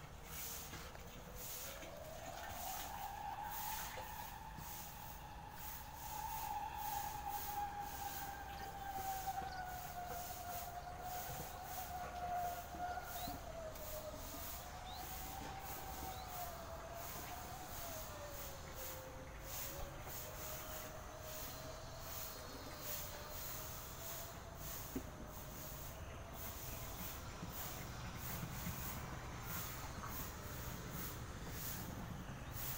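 A siren: one long tone that climbs in pitch about two seconds in, then slides slowly and unevenly lower, wavering, and is still sounding near the end.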